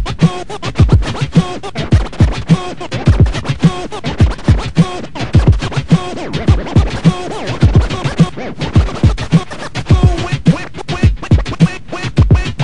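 DJ scratching a sample back and forth on a turntable running M-Audio Torq control vinyl, in quick strokes over a drum beat with regular low kicks.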